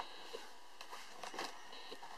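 Faint handling sounds: a few light clicks and soft rustles as a carp rig is lowered into a solid PVA bag held in a plastic bag loader tube.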